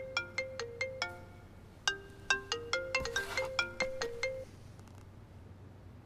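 Mobile phone ringtone: a short melody of quick, struck-sounding notes, played through twice, stopping about four and a half seconds in as the call is answered.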